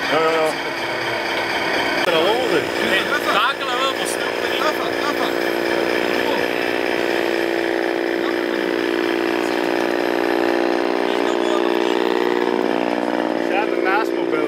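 A radio-controlled model truck running with a steady drone rich in overtones, which rises slightly in pitch near the end. People talk over it in the first few seconds.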